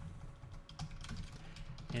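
Computer keyboard typing: a run of quick, irregular key clicks.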